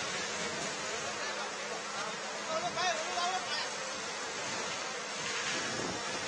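A steady hissing noise, with faint distant voices about halfway through.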